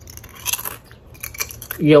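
Crunching of a Doritos tortilla chip being bitten and chewed, in two short bursts of crisp crunches.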